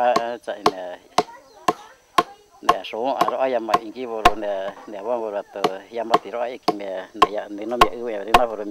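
Steady rhythmic striking, about two sharp knocks a second, from someone chopping or pounding at work on the ground, under a man speaking.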